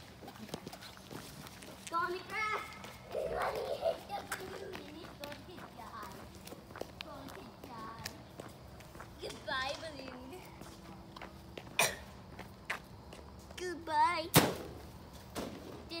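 Children talking and calling out, and near the end one loud, sharp smack of a golf club hitting an Orbeez-filled balloon, which does not pop.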